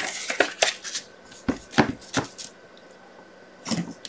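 Paper and card stock being handled and set down on a craft mat: a few light taps and rustles, the loudest near the end.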